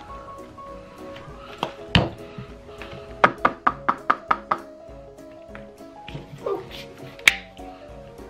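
Upbeat background music, over which plastic popsicle molds are handled on a cutting board: one knock about two seconds in, a quick run of about seven light taps around the middle, and a sharp click near the end.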